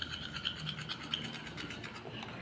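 Metal spoon stirring ground coffee and egg white in a small ceramic bowl: quiet, rapid scraping with small clinks of the spoon against the bowl.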